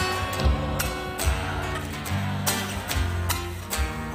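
Folk band playing a zamba live: strummed acoustic guitars over bass notes and a bombo drum, in an instrumental passage between sung verses.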